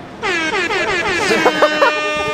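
An air horn sound effect: one long held blast that starts suddenly about a quarter second in, swoops up in pitch at first, then holds steady. Voices are heard over it in the second half.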